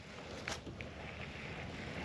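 Faint, steady outdoor background hiss with light wind on the microphone, and a soft click about half a second in.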